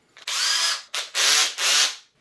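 Milwaukee cordless drill running in three short bursts, drilling a pilot hole into the IKEA Pax cabinet for a shelf-bracket screw. The first burst has a rising whine as the motor spins up.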